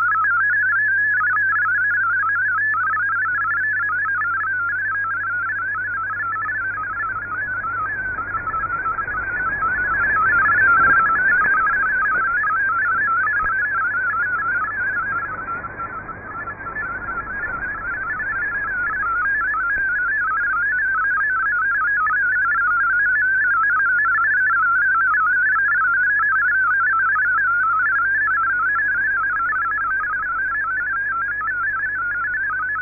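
MFSK32 digital text signal received on shortwave: a fast, steady warble of hopping tones, with a low hum beneath. About halfway through, the signal swells and then fades, with added noise, before recovering.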